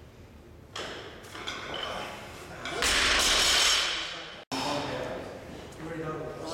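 Barbell with bumper plates being lifted and handled, with knocks and a metallic ring from the bar and plates. About three seconds in there is a loud rush of noise that fades and then cuts off abruptly. Voices are heard around it.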